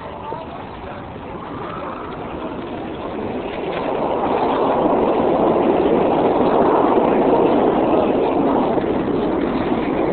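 Busy city street traffic noise, a steady rumble and hiss that grows louder about four seconds in and stays loud.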